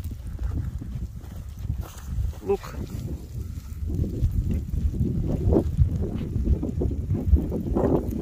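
Molten lava flow front crackling and clinking as its cooling crust breaks, over a low rumble of wind on the phone microphone. The crackling grows louder and busier about halfway through.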